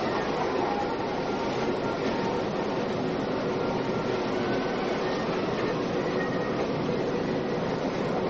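Electric suburban train running along the track: a steady, even running noise with no distinct beats or squeals.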